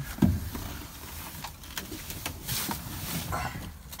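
Ford 6.7 L Power Stroke V8 diesel idling on a cold start in about 4°F weather with no block heater plugged in. A loud thump comes about a quarter second in, and a few light clicks follow.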